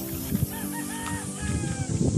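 A rooster crowing once, lasting more than a second, over background music.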